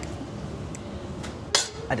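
Kitchen room tone with a few faint clinks, and a short sharp noise about one and a half seconds in.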